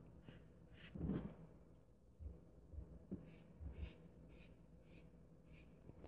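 Faint, soft swishes of a foam brush wiping liquid stain across bare wood boards, several in quick succession in the second half, over near silence.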